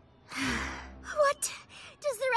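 A young woman's voice-acted sharp gasp, then a short startled cry about a second in.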